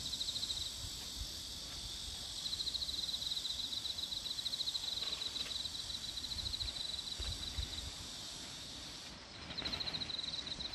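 An insect singing outdoors: a high trill of rapid pulses, breaking off about a second in, resuming for several seconds, pausing again near the end and starting up once more. A fainter steady high hum of other insects and a low outdoor rumble sit underneath.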